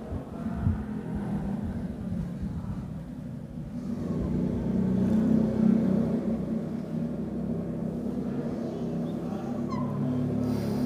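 A low droning rumble with a steady hum in it, swelling a few seconds in and easing off again.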